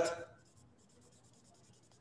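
A man's spoken word trailing off, then near silence with a faint, rapid, high-pitched scratching.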